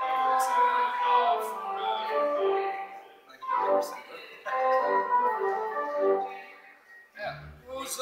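Pipe organ playing held chords that step from one to the next, fading away around six seconds in. A voice is heard briefly about three and a half seconds in, and a short low sound comes just after seven seconds, as a man's singing voice begins at the very end.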